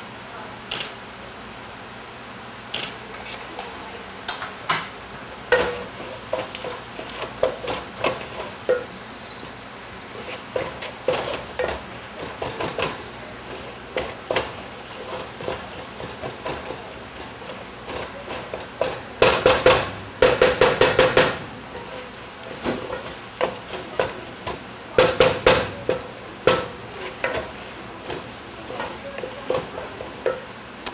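Wooden spoon stirring and scraping onions and spices frying in a coated pot, with irregular knocks against the pot over a steady low sizzle. Two louder bursts of clatter come about two-thirds of the way through.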